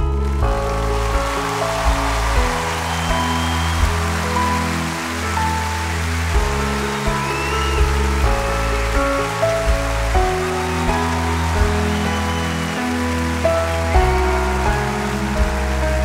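Instrumental passage of a live pop ballad: sustained chords over slowly changing bass notes, with a steady hiss-like wash that comes in at the start of the passage.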